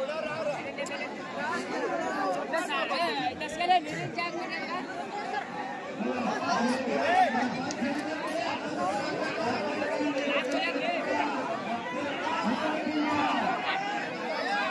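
Crowd chatter: many voices talking over one another at once, steady throughout.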